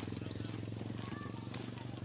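Birds chirping faintly: a few short, high, rising whistles near the start and again about a second and a half in, over a steady low hum.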